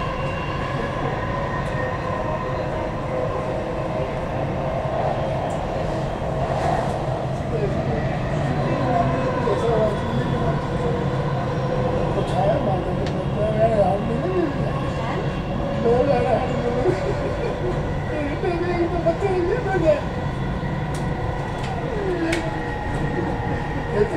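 Dubai Metro train running, heard from inside the carriage: a steady low rumble with several constant whining tones over it.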